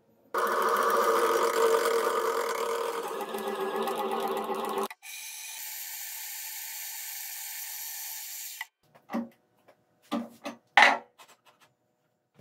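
Milling machine spindle running as a drill bit cuts into a threaded steel rod, heard as a loud steady machine noise that cuts off suddenly just before five seconds in, then a quieter, higher-pitched cutting noise for about three and a half seconds. A few short knocks of metal parts being handled follow near the end.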